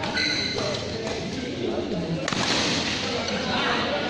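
Badminton rally: a few sharp racket strikes on the shuttlecock, the loudest a little over two seconds in, with shoe sounds on the court mat and voices in the echoing hall.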